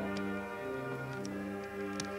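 High school concert band playing held wind chords that shift to a new chord at the start, with a few sharp ticks over the music.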